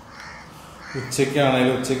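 A man's voice holding a long drawn-out vowel sound from about a second in, after a quieter first second.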